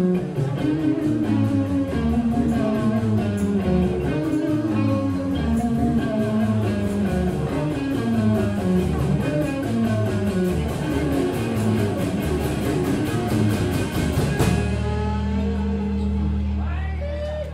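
Live rock band playing: an electric guitar lead line over bass and drums with a steady cymbal beat. About fourteen and a half seconds in, the band hits a closing crash and a final chord that is left ringing, the end of the song.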